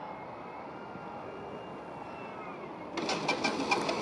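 Single electric outrunner motor and propeller of an F3A aerobatic model plane whining faintly at low throttle on landing approach, the pitch sagging slightly. About three seconds in, a sudden louder clatter and rattle as the landing gear touches down and rolls on the asphalt runway.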